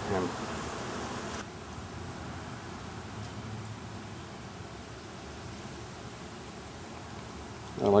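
Steady buzzing of many honey bees flying around their nest, a constant insect hum. It turns suddenly quieter and duller about a second and a half in.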